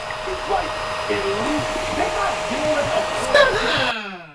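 Football highlights playing on a TV: a steady crowd din with voices wavering through it and a brief louder burst a little over three seconds in.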